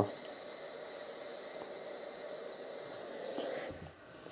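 Black & Decker Stowaway SW101 travel steam iron giving off a steady hiss of steam while its water tank is being steamed empty. The hiss swells slightly near the end, then drops.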